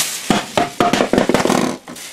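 A thin plastic shopping bag rustling and crinkling as a one-gallon plastic pitcher is pulled out of it and handled, with several quick knocks of hard plastic.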